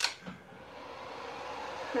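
Handheld electric heat gun switched on with a click, then its fan blowing with a steady rush that grows slowly louder as it comes up to speed.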